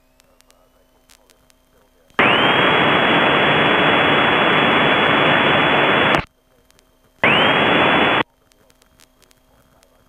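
Two bursts of loud radio static in the aircraft's headset audio, the first about four seconds long and the second about one second, each switching on and off abruptly.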